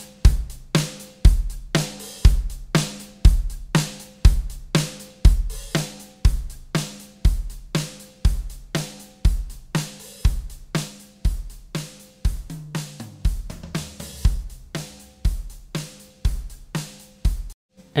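A recorded drum kit played back: a kick drum about once a second, with snare and hi-hat hits in between. It is run through a multiband compressor set to a fast attack and release with the thresholds pulled down, so it is heavily compressed. The playback stops abruptly near the end.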